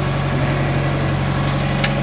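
Fishing boat's inboard engine running steadily while under way, a loud, even low drone heard in the wheelhouse, with two faint clicks late on.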